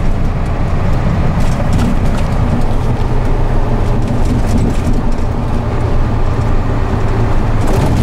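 Steady low rumble of a Hino tow truck driving on a rough, bumpy city road, heard from inside the cab, with engine hum and a few faint knocks.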